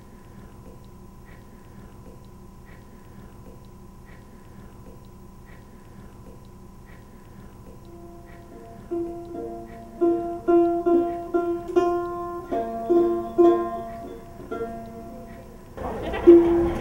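A faint steady hum with soft regular ticks a little more than once a second, then from about halfway in a plucked string instrument sounding single notes, a few a second, that grow louder.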